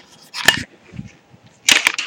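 Handling noise from a camera being picked up and moved: a sharp click about half a second in, then a few faint knocks and rustles, with a louder scuffle near the end.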